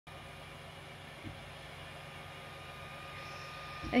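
Creality Ender 6 3D printer running as the print head moves: a steady hum of its fans and stepper motors with a thin, steady high tone through it, and one soft knock about a second in.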